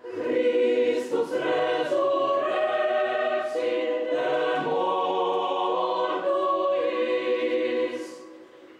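Mixed choir of men's and women's voices singing sacred choral music unaccompanied, holding slow sustained chords; the phrase breaks off near the end.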